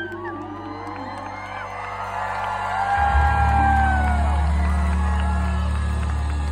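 Live concert audience cheering and whooping as a held sung note ends, with a deep sustained bass note from the band coming in about halfway through.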